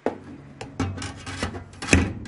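A 3 by 8 inch copper plate being lowered into a steamer's plastic liner and wire mesh cage, rubbing and clicking against the plastic and wire in a run of short scrapes, with a sharper knock just before the end.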